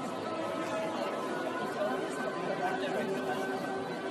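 Steady indistinct chatter of a crowd of people talking at once.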